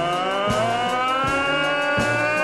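Song: a singer holds one long note that slides slowly upward, over orchestral backing with a drum hit about every three-quarters of a second.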